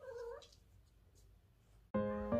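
A domestic cat meows once, a short call about half a second long at the start. Piano music starts just at the end.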